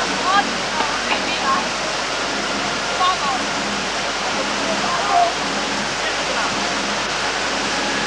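Rushing whitewater in a slalom channel, a steady loud roar of churning water, with short distant voices calling over it now and then.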